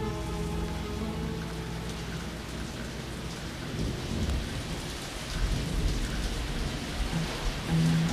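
Recorded rain falling, with low rumbles of thunder, as an interlude inside the music. A held chord dies away in the first second, and the band's music comes back in just before the end.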